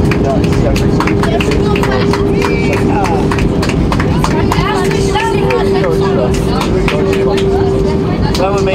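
Airbus A319 cabin noise on the landing rollout: a loud, steady rumble from the engines and the wheels on the runway as the jet slows with its spoilers up, with a steady whine and frequent clicks and rattles. Voices of passengers talking can be heard over it.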